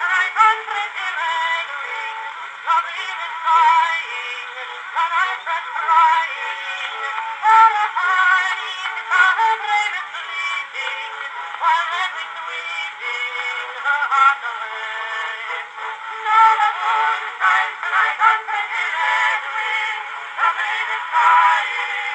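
Edison Home cylinder phonograph playing back an early acoustic recording of a vocal song with instrumental accompaniment through its horn. The sound is thin and narrow, with no bass.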